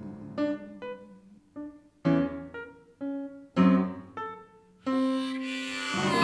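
Upright piano playing a slow blues: chords struck one at a time with gaps between, each ringing and fading away. Near the end a steady held note comes in.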